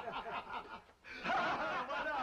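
Men chuckling and laughing, breaking off briefly about halfway, then laughing and talking again.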